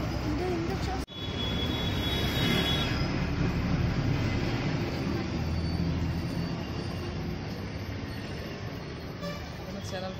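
Steady street background noise: traffic and indistinct voices, with a momentary dropout about a second in.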